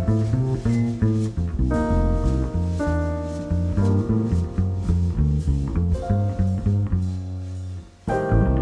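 Live acoustic jazz from a piano, trumpet, double bass and drums quartet, with a busy plucked double bass line prominent under piano chords. The music drops away briefly just before the end, then picks up again.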